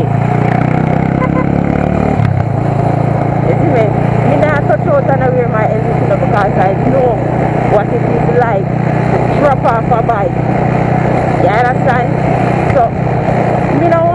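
Motorcycle engine running under way, its pitch climbing over the first couple of seconds as it speeds up, then holding a steady drone.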